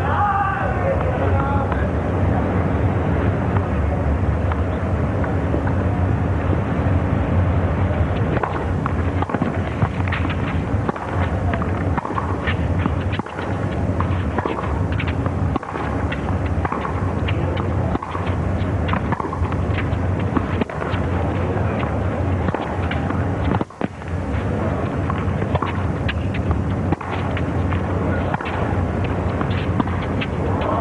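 Tennis stadium crowd murmuring steadily, with scattered short sharp sounds such as claps and calls from about eight seconds in.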